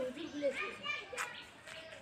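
Children's voices chattering and calling, getting fainter over the second half.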